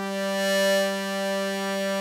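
Arturia MicroBrute analogue synthesizer holding one steady, buzzy note while a panel knob is turned. The tone brightens and an overtone swells a little before a second in, then it settles back.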